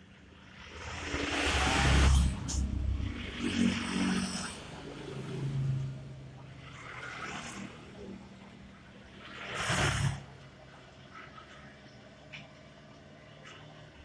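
Motor vehicles passing by, each swelling and fading: a loud pass peaking about two seconds in, a shorter sharp one about ten seconds in, and weaker ones between.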